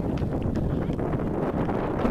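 Wind buffeting the microphone: a steady low rumbling noise.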